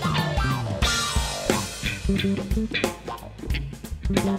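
A jazz-fusion band playing live, with guitar, bass guitar and a drum kit keeping a steady beat.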